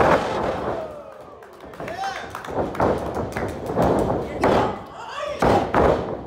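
Heavy thuds of wrestlers' bodies and feet hitting the wrestling ring's canvas, a loud one right at the start and several more near the end, with shouting voices between them.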